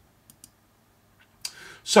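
A few faint, sharp computer clicks with quiet between them, then a louder click about a second and a half in, as the presentation is advanced to the next slide.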